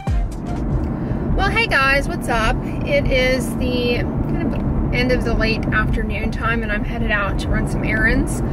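Steady low rumble of a car heard from inside the cabin while driving, with a voice over it.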